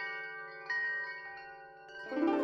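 Soft chime notes from a cinematic music score, struck and left to ring over a low sustained drone, with a new note just under a second in. The notes fade toward the end.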